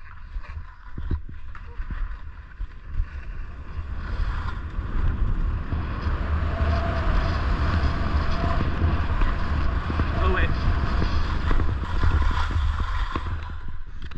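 Wind buffeting the microphone while riding a snowboard over tracked snow, with the hiss and scrape of the board sliding. It grows louder about four seconds in as speed picks up.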